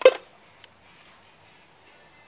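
A brief knock of a weather radio being handled at the very start, then quiet room tone with one faint click about two-thirds of a second in.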